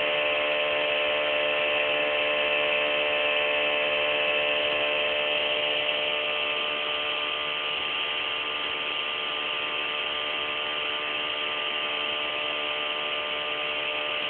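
Home-built Bedini SSG pulse motor running steadily while it charges a cellphone battery: a continuous whine made of many steady tones, getting slightly quieter about halfway through.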